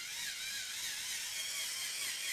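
Battery-powered 5-in-1 facial massage brush running with its soft sponge head on the skin, its small motor giving a steady whir whose pitch wavers up and down.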